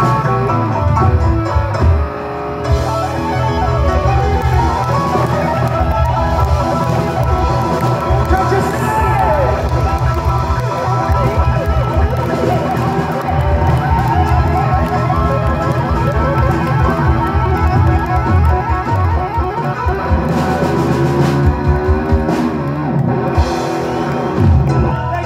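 Live rock band playing an amplified song: electric guitar, keyboards, bass and drums, with a strong pulsing bass line throughout.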